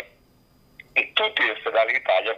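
A man speaking Italian. There is a pause of about a second, then his speech resumes.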